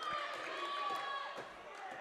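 Basketball gymnasium ambience during a stoppage in play: faint voices of players and spectators echoing in the hall, with a few light knocks.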